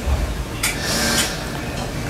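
Brief splashes and sloshes of liquid as raw chicken pieces are pushed about by hand in a pan of seasoned broth, a few short bursts over a steady background hiss.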